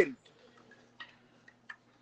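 A few faint, light clicks as a clear plastic tumbler with a straw is handled and picked up, over a faint steady low hum.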